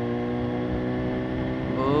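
BMW S1000RR inline-four engine running at steady revs while the bike cruises, holding one even pitch.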